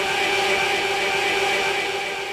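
A voice holding one long chanted note through the loudspeakers, sustained without a break and slowly fading.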